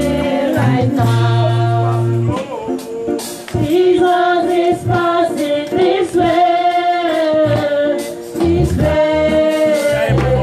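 A group of voices singing a gospel song, with a low held bass note under the singing in about the first two seconds.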